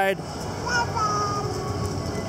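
Steady rolling rumble of a stroller's small wheels on concrete pavement, with a faint held voice about a second in.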